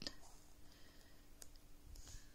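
Near silence broken by three faint, sharp clicks from a pen being handled against a paper scratchcard, with a faint steady hum underneath.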